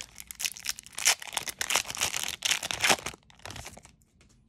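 Foil wrapper of a Magic: The Gathering booster pack being torn open and crinkled by hand, in irregular crackling bursts for about three seconds, then fainter rustling.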